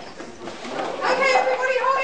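A group of adults talking and calling out over one another, with the voices getting louder about a second in.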